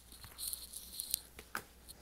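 Faint rustling and a few light clicks of CD cases being handled and swapped.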